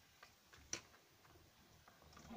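Near silence with a few faint clicks, one sharper click about three-quarters of a second in.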